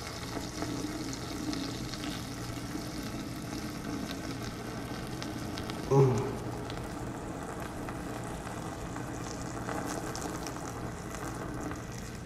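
A steady background hiss with a faint low hum. About halfway through, a man gives one short 'ooh'.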